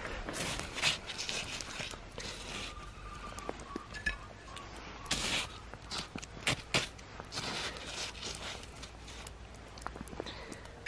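Snow crunching and scraping as a wooden spoon digs into it and scoops up clumps of maple-syrup-soaked snow, in irregular short bursts.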